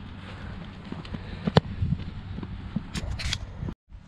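A football kicked in a field goal drill: one sharp impact of the foot on the ball about one and a half seconds in.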